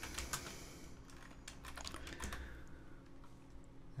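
Typing on a computer keyboard: a few quick runs of light key clicks.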